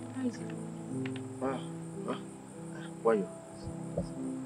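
Background film music of long, sustained low chords, with crickets chirping steadily underneath. A few short wavering voice sounds cut in over it, the loudest about three seconds in.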